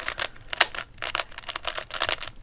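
A 3x3 Rubik's cube being turned fast by hand through a sequence of moves: its plastic layers click and clack in a quick, uneven run of about a dozen turns.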